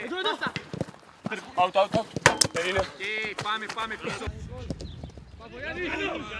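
Men shouting and calling out across a football pitch, mixed with sharp thuds of a football being kicked; the loudest strike comes a little over two seconds in.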